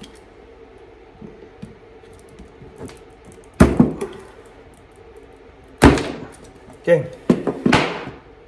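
Pliers working a nickel strip tab off the 18650 cells of a lithium-ion battery pack: sharp metal-and-plastic clicks and snaps as the tab is gripped and pried up. Two come about three and a half seconds in, another about two seconds later, and a quick cluster near the end.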